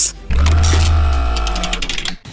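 Short musical transition sting: a deep bass note sounds about a third of a second in and fades over about a second and a half, with steady tones above it and a quick run of ticks near the end.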